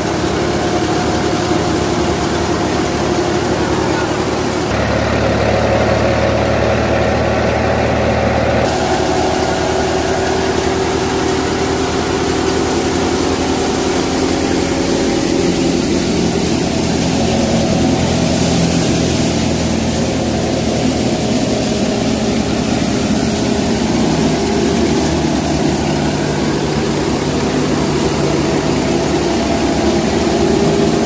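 Ford 3610 tractor's three-cylinder diesel engine running steadily under load, driving a wheat thresher whose drum and fan run with it as wheat is fed in. The mix of tones shifts abruptly about five and again about nine seconds in.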